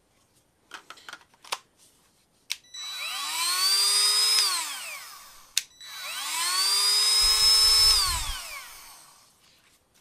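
Cordless Milwaukee M12 rotary tool switched on twice, running on a freshly rebuilt battery pack: each time the motor spins up to a high whine, holds briefly, then winds down. A few clicks come before it as the tool is handled, and a click falls between the two runs.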